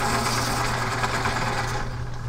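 A small motor buzzing for about two seconds, cutting off near the end, over a steady low hum.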